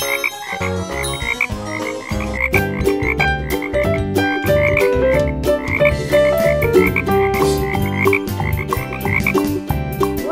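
Cheerful children's background music with a steady beat, its melody in held notes, and a short high blip repeating a few times a second.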